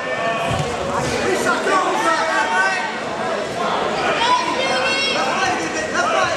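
Several spectators shouting over one another at a wrestling bout, with raised, strained yells urging on the wrestlers.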